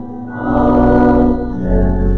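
Pipe or electronic church organ and congregation singing long held chords, the sung response after the benediction. The chord changes about three-quarters of the way through.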